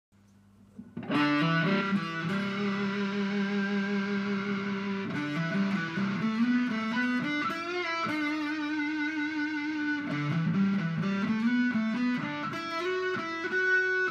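Ibanez electric guitar played with a fuzzy, distorted tone: a lead line of long sustained notes, some held with a wavering vibrato, starting about a second in.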